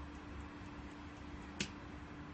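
A single sharp switch click about one and a half seconds in, as the headlight's amber turn-signal strip is switched off, over a faint steady hum.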